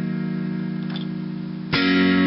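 A Casio electronic keyboard holds an E-flat minor chord that slowly fades, then the next chord of the intro is struck near the end.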